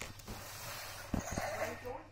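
Quiet talk with a short spoken word near the end, and two soft thumps a little past the middle.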